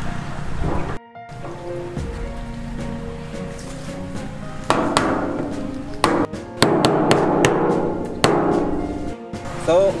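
A hammer knocking on a PVC pipe fitting to seat it, about eight sharp knocks in the second half, over background music.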